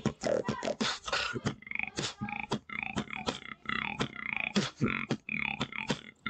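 Beatboxing: a fast, steady rhythm of sharp mouth-made kick, snare and click hits, several a second, with short pitched voice sounds woven between them.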